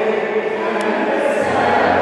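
A group of people chanting together in unison, many voices sustained at a steady level.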